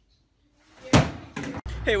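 One loud bang about a second in, coming out of near quiet with a brief rush of noise just before it. Near the end a low, steady street rumble begins and a man says "Hey".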